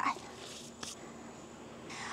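Quiet background with one brief faint tick about a second in, and a soft breath-like noise near the end.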